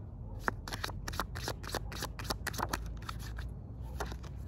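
A deck of divination cards being shuffled by hand: a quick run of soft card clicks and flicks that starts about half a second in and stops shortly before the end.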